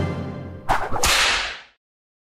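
The tail of the music dies away, then an editing sound effect: two sudden swishes about a third of a second apart, the second fading out over about half a second, timed to a label graphic appearing on screen.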